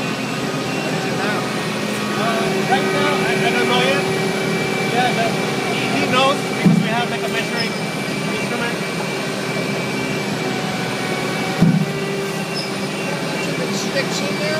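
Diesel engine of a hydraulic diaphragm-wall grab rig running steadily with a constant hum, and two heavy clunks about five seconds apart as the clamshell grab works its jaws over the spoil truck.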